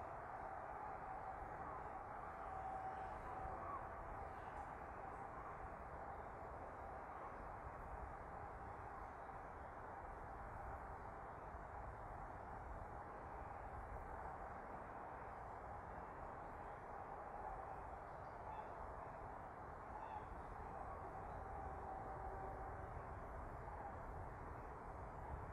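Steady hum of distant motorway traffic, even throughout.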